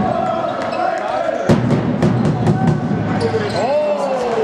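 Basketball game sounds on a sports-hall floor: a ball bouncing in irregular knocks and sneakers squeaking. There is a held squeak through the first second and short rising-and-falling squeaks near the end.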